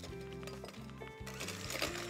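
Background music with sustained notes; about a second and a half in, the whir of an electric hand mixer starting up on medium speed joins it.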